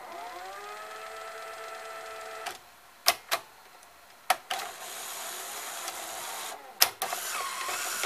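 Sony SL-HF550 Betamax VCR's tape transport working with the cover off. A motor whines up in pitch to a steady speed and runs for about two and a half seconds, then stops. Sharp mechanism clicks and a longer noisy mechanical whirr follow as the machine unloads and ejects the cassette.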